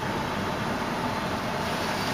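Steady mechanical hum inside a parked truck's cab, an even running noise with a faint steady whine over it.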